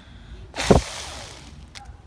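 A hard breath blown onto a toy pinwheel held at the mouth: a sudden rush of air about half a second in, buffeting the microphone, then trailing off over about a second.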